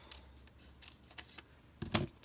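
Small yellow-handled scissors snipping through a paper sticker sheet: several short, crisp cuts. Near the end comes a louder knock as the scissors are set down on the wooden tabletop.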